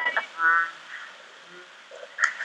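A short, croaking vocal noise from a woman's voice, about half a second in, lasting less than half a second.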